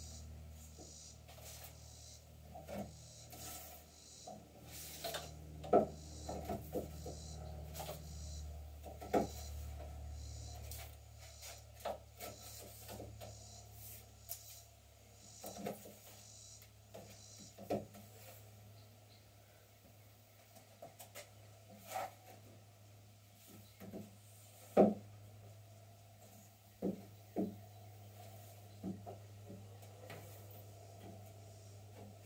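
White plastic pipes knocking, clicking and rubbing against a wooden board as they are slid one by one through drilled holes. The knocks come irregularly, a few sharper than the rest, over a low steady hum.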